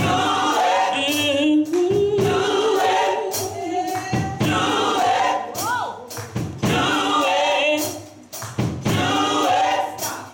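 Gospel choir of mixed men's and women's voices singing together, with sharp percussive beats landing roughly once a second. There is a brief drop in volume a little before the end.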